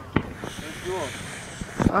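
Short bits of voices and wind noise outdoors, with two sharp knocks about a second and a half apart.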